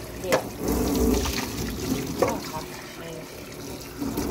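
Kitchen tap running over a stainless steel sink while a metal cup is rinsed under the stream, with two short sharp knocks, one just after the start and one about two seconds in.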